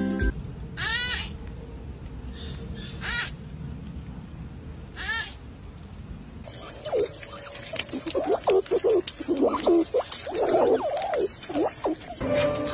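Music stops just after the start. Three short high animal calls follow, each falling in pitch, about two seconds apart. From about halfway, over a crackling rustle, comes a quick run of squeaky calls that rise and fall.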